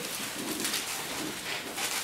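Thin Bible pages being leafed through, giving soft, scattered paper rustles, under a faint low hum.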